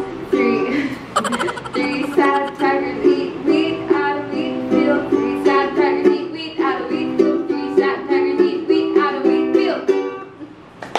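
Ukulele strummed in steady rhythmic chords, with a woman's voice singing a tongue twister over it.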